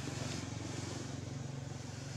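A small engine running steadily in the background, a low pulsing hum that slowly fades.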